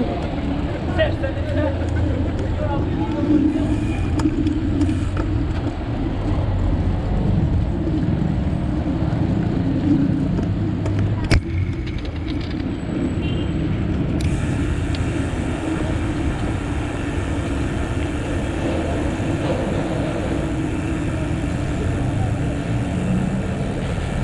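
Steady low wind rumble on the microphone of a handlebar-mounted camera as a mountain bike rides along a city road, with car traffic around it. A single sharp click stands out about eleven seconds in.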